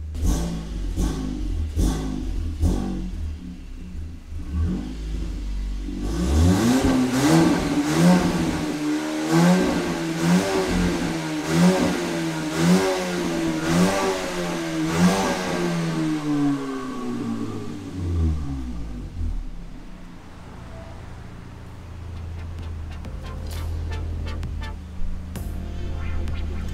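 Mk7 Golf R's built, turbocharged 2.0-litre four-cylinder revved while parked. About six seconds in the revs climb and hold high, surging up and down roughly once a second, then drop back to a low idle at about nineteen seconds.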